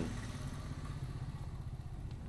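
A low, steady rumble of a small engine running.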